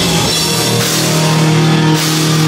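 Live hardcore punk band playing loud: distorted electric guitars and bass hold a low note over drums and cymbals.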